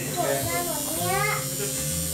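Electric tattoo machine buzzing steadily while tattooing.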